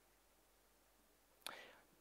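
Near silence, then a short breath drawn in through a headset microphone about one and a half seconds in.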